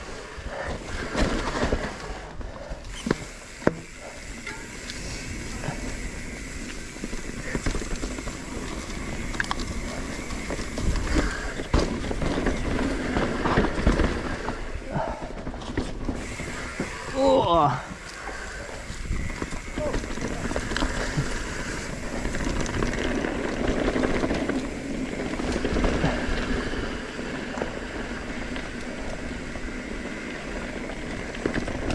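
A mountain bike rolling down a rough dirt singletrack: tyres running over dirt, leaves and roots, with the frame and drivetrain rattling and knocking over bumps. A little past halfway there is one short sound that falls in pitch.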